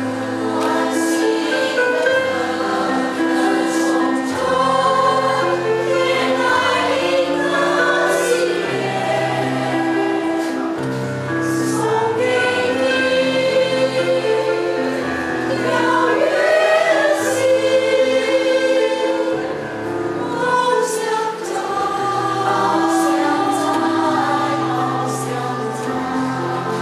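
Women's choir singing a song in several-part harmony, with low sustained accompaniment notes underneath.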